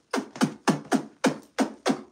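A man's voice making rapid mouth sound effects of blows, about three or four short falling "boom"-like hits a second, imitating a beating with stomps and punches.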